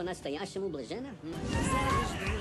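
A man laughing loudly in bursts from a TV soundtrack, then music coming in about a second and a half in.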